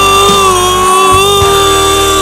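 A male singer holding one long, steady sung note into a handheld microphone, with a live rock band behind him and a few low drum beats under the note.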